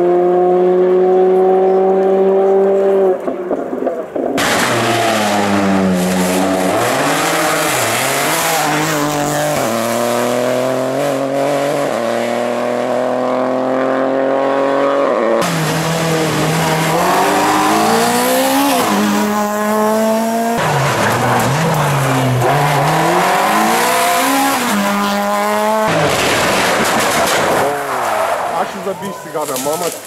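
Rally car engines revving hard and loud. The pitch climbs and then drops sharply again and again as the cars change gear, brake and accelerate on the stage.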